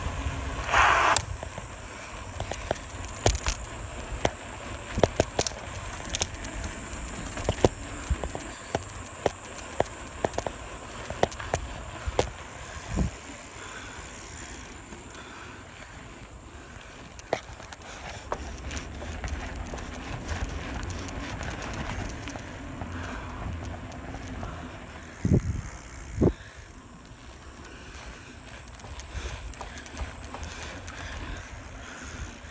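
Bicycle riding over pavement: a steady wind rumble on the microphone with frequent irregular clicks and knocks as the bike rattles over the road, a short louder rasp about a second in and two heavier thumps near the end.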